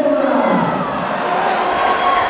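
Boxing crowd cheering and shouting, with one loud shout falling in pitch in the first second.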